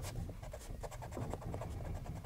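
Pencil working over drawing paper: soft, continuous scratching and rubbing with no sharp strokes.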